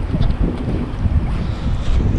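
Gusty wind buffeting the microphone: a loud, uneven low rumble, typical of the strong wind ahead of a typhoon.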